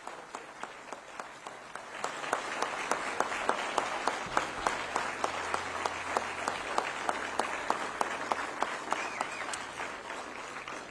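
Audience applauding, a dense patter of many hands clapping that grows louder about two seconds in.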